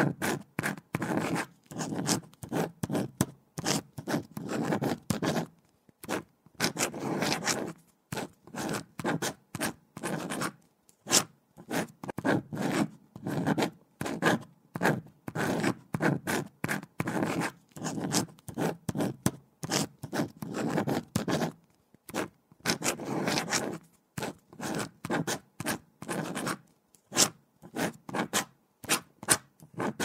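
Pen writing on paper: quick, scratchy strokes in irregular runs, broken every few seconds by brief pauses.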